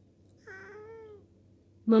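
A grey tabby cat giving one meow, a little under a second long and falling slightly in pitch at its end. The owner takes it for the cat asking for food.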